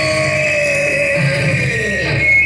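Loud electric guitar holding one long note that slowly slides down in pitch, over a low chord left ringing.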